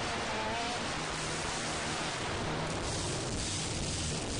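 Loud live church worship music with a congregation singing along, heard as a dense, noisy wash with a few held sung notes near the start.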